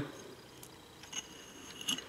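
Metal spatula spreading and mixing gel paint on paper: a few faint soft ticks and scrapes over low room tone.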